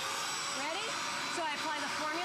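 Bissell Spot Clean Pro portable carpet cleaner running with a steady suction rush and a thin, steady whine in it, as its hand tool works a stain in the carpet.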